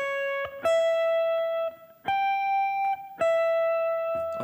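Clean electric guitar picking four single held notes, the chord tones of a harmony line. The first note is short, the third is the highest, and the last drops back to the pitch of the second.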